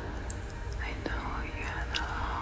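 Sparse, textural experimental electronic music: a whispered voice enters about a second in over a low steady hum, with a couple of sharp clicks.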